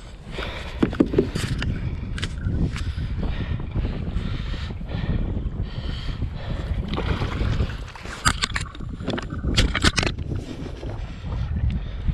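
Water sloshing against a kayak hull and wind buffeting the microphone, a steady low rumble. A cluster of sharp clicks and knocks comes about eight to ten seconds in.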